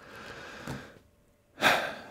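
A man breathing close to the microphone during a pause in speech: a soft exhale, a brief silence, then a sharp, loud intake of breath near the end.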